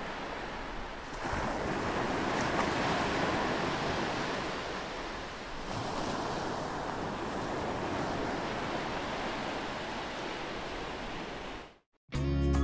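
Ocean surf rushing steadily, swelling about a second in and again near the middle, then cutting off abruptly just before the end.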